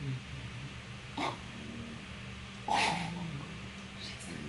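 A sleeping English bulldog making two short snoring noises, a faint one about a second in and a louder, longer one near three seconds in.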